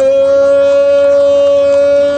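A man's loud, long held shout on one steady pitch: the traditional grito of Antioquian arrieros, the cry that announces their arrival.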